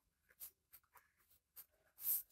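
A pen scratching faintly on notebook paper in a few short strokes, as a small label and arrows are written.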